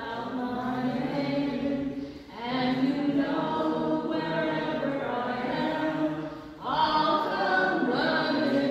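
Unaccompanied chant-like singing: voices holding long, slowly moving notes in three drawn-out phrases, with short breaths between them about two seconds in and near the end.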